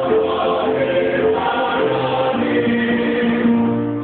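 A choir of young women singing a march together, holding each note for about half a second to a second.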